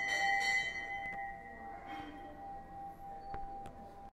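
A temple bell struck once, its ringing tone slowly fading away, with a few faint clicks behind it.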